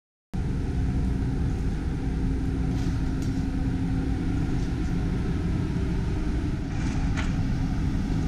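Steady low rumble of the open deck of an aircraft carrier underway at sea, with a faint steady hum. It starts suddenly just after the opening and carries a few faint ticks; no gunfire.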